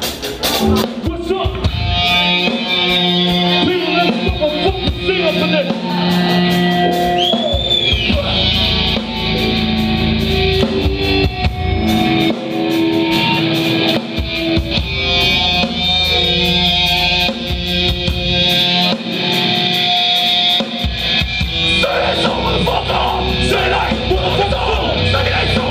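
A hardcore band playing live: electric guitars and bass holding loud chords over a pounding drum kit.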